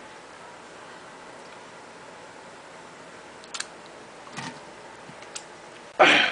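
Quiet steady room tone with a few faint clicks and knocks from a handheld camera being moved about, about three and a half, four and a half and five and a half seconds in.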